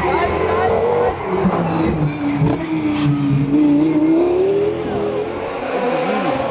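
Rally car engine passing through a bend: the engine note drops over the first few seconds as it slows, then climbs again as it accelerates away.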